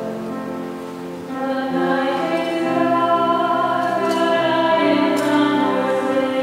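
A sung church hymn with keyboard accompaniment. The instrument plays alone at first, and voices come in about a second in, louder, and carry on singing.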